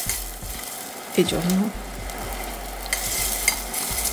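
Sliced onions sizzling in hot oil in a stainless steel pot while being stirred with a wooden spatula, which scrapes and clicks against the pot. The onions are being fried lightly with a little salt to soften them.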